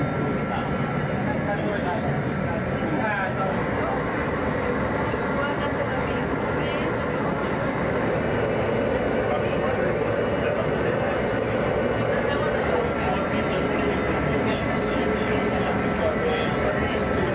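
Steady roar of a glassblowing furnace's gas burner, running evenly throughout, with people talking under it.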